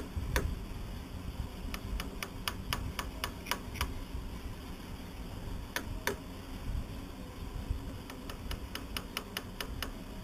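Runs of light, sharp clicks and taps, about four a second, as a plywood bulkhead and its clamp are worked back into position against the hull. A low rumble lies underneath.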